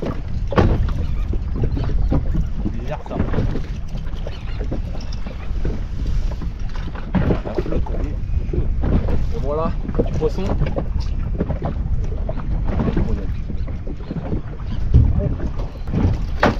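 Wind buffeting the microphone over water lapping against the hull of a drifting inflatable boat, with occasional knocks against the boat.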